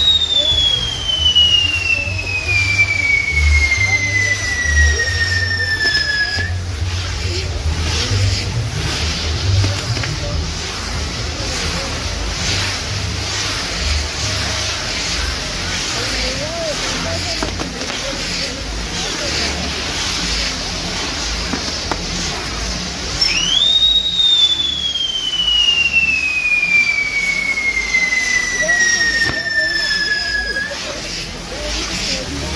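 Burning castillo fireworks frame: a steady hiss and crackle of spinning spark wheels with a low rumble. Twice, at the start and again about 23 seconds in, a firework whistle shrieks up and then falls slowly in pitch for about six seconds.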